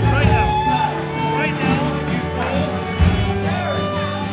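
Live worship band playing slow music with long held chords, with voices speaking over it.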